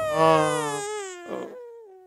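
A man's long, drawn-out whimpering "aah", sliding slowly down in pitch and fading away over about two seconds: a comic whine of reluctance.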